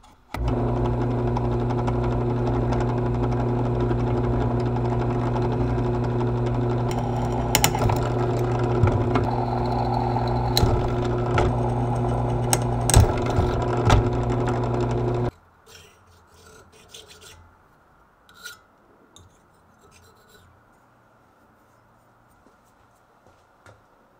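Drill press motor running steadily while a small bit drills through a thin steel plate, with scattered sharp clicks and scrapes as the bit cuts the metal. The motor sound cuts off suddenly about fifteen seconds in, leaving only faint handling clicks.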